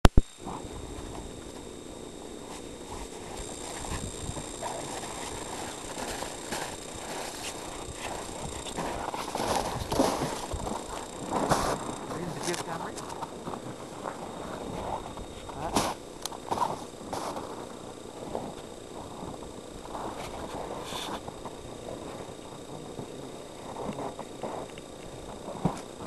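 Indistinct, muffled voices mixed with rustling and handling noise, broken by a few sharp clicks.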